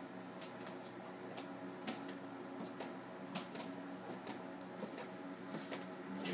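Faint steady hum with several even tones, dotted with scattered light clicks and ticks.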